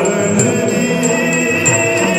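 Yakshagana bhagavata singing a long held melodic line in a male voice, over a steady drone. Small hand cymbals ring with light, regular strikes that keep the tala.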